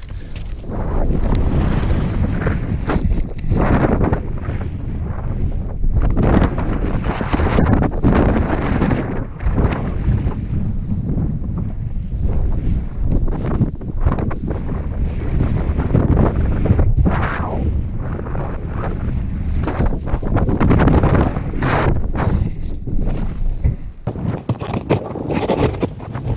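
Wind buffeting an action-camera microphone as a snowboard rides through deep powder snow. The rush of noise comes in loud surges every second or two, with each turn.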